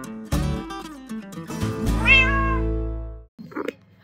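Light background music with a single cat meow about halfway through: one call that rises and then holds. The music stops shortly after, and a brief scuffing noise follows.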